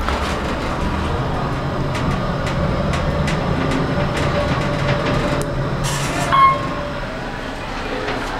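Ride noise inside a 1992 Otis Series 2 hydraulic elevator car travelling down: a steady low rumble and hum with faint clicks. About six seconds in there is a short click and a brief tone, and the rumble eases as the car slows.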